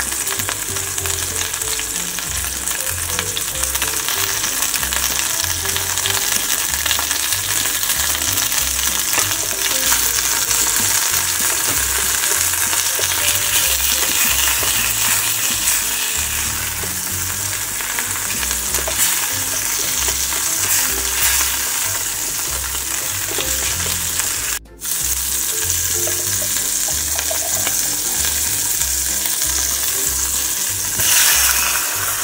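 Chicken drumsticks and sliced garlic frying in olive oil in a stainless steel saucepan, a steady sizzle throughout. The sound cuts out for a moment near the end.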